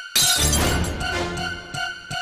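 A glass bottle shatters just after the start, its crash and scattering debris ringing on for about a second. It plays over tense background music with an evenly pulsing beat.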